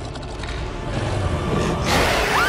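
Film soundtrack: a low, tense rumble building in loudness, then a mandrill's loud open-mouthed roar breaking in near the end.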